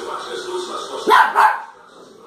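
Two quick barks from a small dog, a little over a second in, with television sound in the background.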